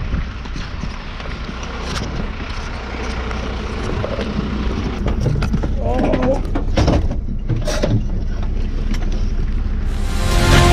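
Fire engine's diesel engine idling with a steady low rumble, under rustling of turnout gear and knocks as a firefighter climbs into the crew cab; brief voices about six seconds in.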